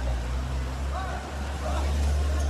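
People's voices over a steady low rumble that swells near the end.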